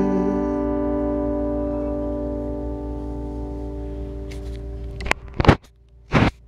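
Acoustic guitar's final chord ringing out and slowly fading away. About five seconds in, a few sharp, loud knocks and rustles as the recording device is handled.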